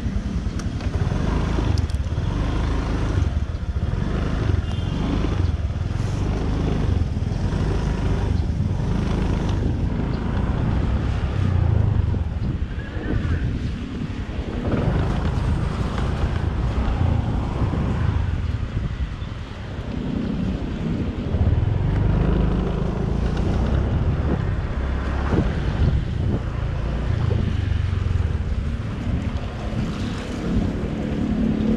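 Wind buffeting the microphone of a helmet-mounted action camera in uneven gusts while a Honda Click 150i scooter is ridden, its single-cylinder engine running underneath.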